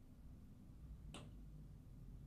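Near silence with a low steady hum, broken by a single short, sharp click just over a second in.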